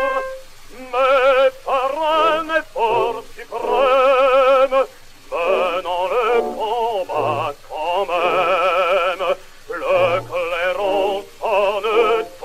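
Male classical singer singing a French song with strong vibrato over instrumental accompaniment, heard from an old 78 rpm disc recording with a thin, narrow sound.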